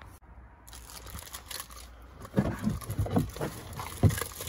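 Crinkling and rustling of a plastic bag and plastic funnel being handled, with irregular clicks and rubs that grow louder and busier about halfway through.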